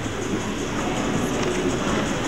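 Steady room noise of a large gymnasium with a seated audience: an even hiss with no words.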